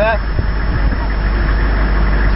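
Steady low rumble of a stopped convoy vehicle's engine idling.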